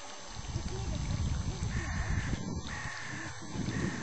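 A bird calling three times, each call about half a second long and about a second apart, over an uneven low rumble.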